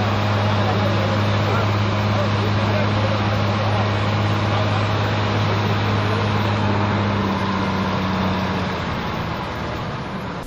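A steady low hum over street noise, fading out about eight or nine seconds in.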